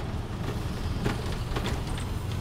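Tuk-tuk (auto-rickshaw) engine running steadily as it drives along, with road and wind noise, heard from the open rear passenger seat.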